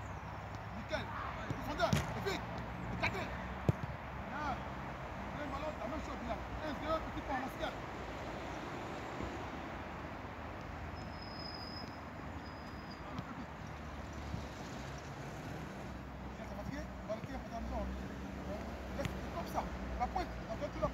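Distant, indistinct voices calling and chattering, with a few sharp knocks of a football being kicked in the first four seconds and a steady low hum underneath.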